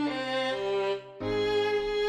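Violin playing a melody in short notes over a backing track with a low bass line. The sound breaks off briefly about a second in, then resumes.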